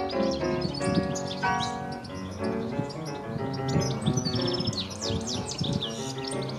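European goldfinch singing a fast twittering song of high chirps, sweeping notes and a rapid trill, busiest in the second half, over background music.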